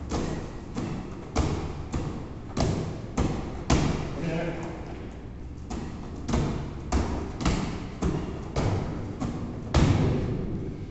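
A medicine ball thudding into hands as it is caught and thrown back at a fast tempo, about two hits a second, with a short break about halfway through.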